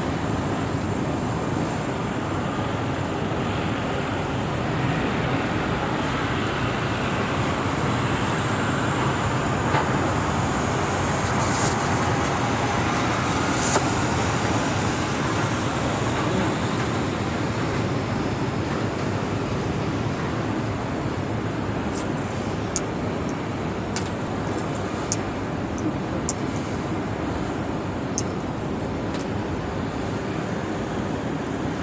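Steady rushing roar of a gas brazing torch flame heating a copper air-conditioner refrigerant pipe to solder a leak, with strong wind on the microphone. A few short sharp ticks come in the last third.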